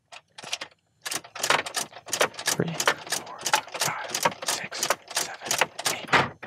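A Ford ignition lock cylinder clicking as a key is turned rapidly back and forth between off and on, about three clicks a second, with the key ring and fob jangling. The ignition is being cycled eight times to put the car into key-fob programming mode.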